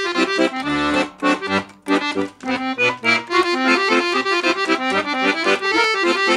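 Soprani piano accordion playing a quick tune, right-hand melody notes changing fast over bass chords, with a short break about two seconds in before the playing runs on.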